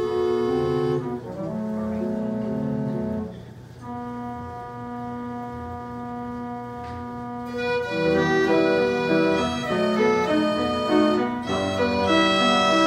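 Welte Brisgovia piano orchestrion playing from its music roll, with organ-like pipe tone over piano. Sustained chords give way to one long, quieter held chord in the middle, then a louder, livelier passage of shorter notes from about eight seconds in.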